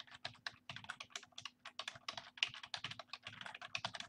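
Computer keyboard typing: a quick, steady run of keystrokes, many to the second, as a line of text is typed out.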